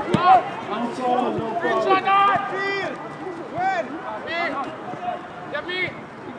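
Several voices shouting and calling across a football pitch, overlapping one another, with one sharp thump just after the start.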